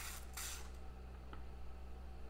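Faint rustling, then a single soft click, over a steady low electrical hum.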